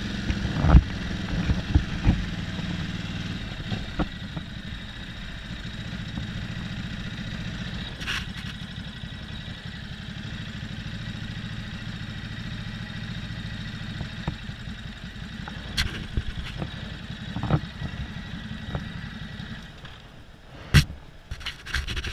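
Ducati motorcycle engine running at low revs as the bike rolls slowly: a steady low rumble. The rumble stops near the end, and a sharp click follows.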